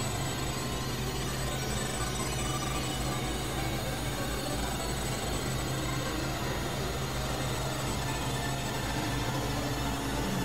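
Experimental synthesizer noise drone: a dense, steady wash of noise over a low, constant hum, with a few faint high tones held throughout and no beat.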